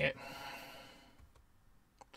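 A man's breath out, a soft sigh-like exhale that fades away over about a second, followed by a faint click.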